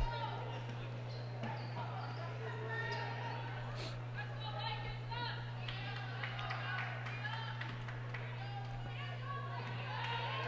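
Faint gym sound of a college basketball game in play: distant voices on the court and a basketball being dribbled, over a steady low hum.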